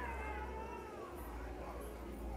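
A faint, drawn-out, high-pitched wail that slowly rises and falls over a steady low hum.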